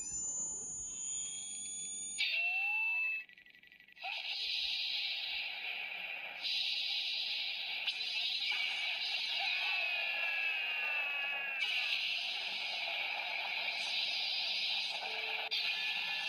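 CSM Faiz Driver ver. 2.0 toy transformation belt playing electronic sound effects and music through its built-in speaker. A louder burst of electronic tones comes about two seconds in, then a brief drop-out, then a sustained electronic noise with sweeping tones that changes near the end.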